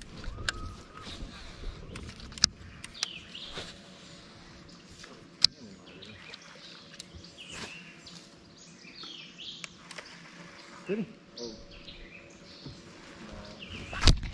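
Birds chirping and calling with short whistled notes, with a few sharp clicks, the loudest about two and a half and five and a half seconds in.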